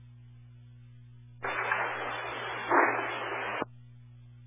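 Air-traffic-control radio frequency opening on a burst of static for about two seconds, starting and cutting off abruptly, with a louder surge near the end: a keyed transmission with no readable speech, over a steady hum in the feed.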